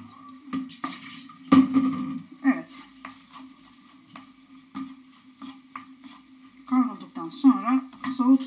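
A wooden spoon stirs a frying pan of sautéing beans, carrots and sausages, giving irregular scraping knocks against the pan over a light sizzle. The loudest knock comes about a second and a half in.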